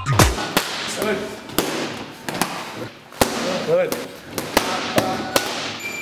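Boxing gloves striking leather focus mitts: about a dozen sharp slaps at an uneven pace, some in quick pairs, as a combination is worked on the pads.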